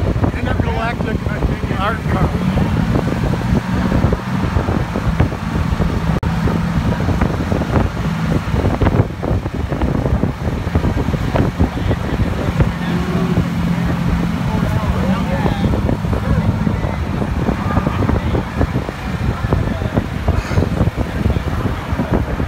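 Wind buffeting the microphone on the open top of a moving vehicle, over a steady bed of vehicle and traffic noise. A low hum comes in twice, each time for about five seconds.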